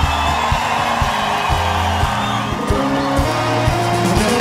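A live band playing an upbeat instrumental groove, with bass guitar and drums to the fore. A crowd cheers over it in the first couple of seconds.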